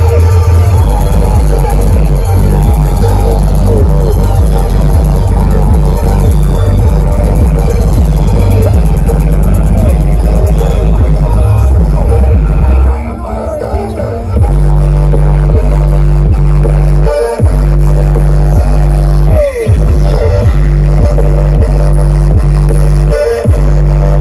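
Very loud electronic dance music with heavy bass, played through huge stacked sound-system rigs. About halfway through the bass drops away for a second or so, then returns as a repeating bass beat broken by a few short gaps.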